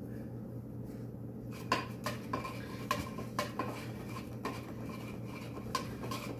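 A wooden Navajo spindle knocking and clicking lightly as it is spun and handled: about a dozen sharp, irregular clicks begin about two seconds in, over a steady low hum.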